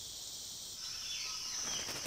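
Tropical rainforest ambience: a steady high-pitched insect drone that shifts in pitch about a second in, with faint short bird calls after the shift.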